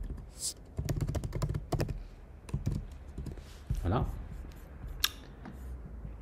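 Computer keyboard typing: a run of quick, sharp keystroke clicks as a class name is typed and entered in a code editor.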